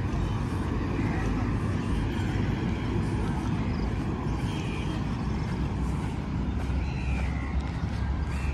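Steady low rumble of city traffic, with faint voices of people now and then.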